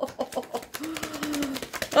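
A woman's wordless vocal sound: a rapid creaky crackle that becomes a low held hum for about a second.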